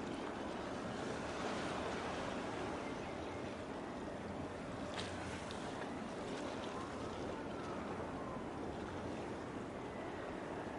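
Steady rush of sea waves and wind across the microphone, with a faint sharp click about five seconds in.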